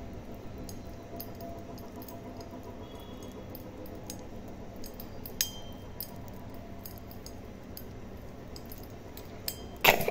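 Pop Rocks popping candy crackling in a mouth: sparse, irregular little pops and snaps, with a louder burst of sharp clicks near the end.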